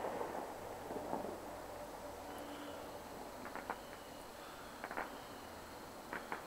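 Faint pops of distant fireworks: a few scattered reports a little past halfway and again near the end, over a quiet background.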